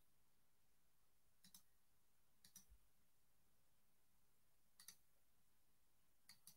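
Near silence with three faint double clicks spread through it, each a pair of short, sharp clicks close together.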